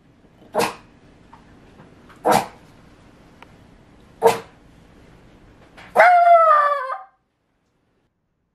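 Rat terrier barking: three sharp single barks about two seconds apart, then a longer call about six seconds in that falls in pitch and cuts off abruptly.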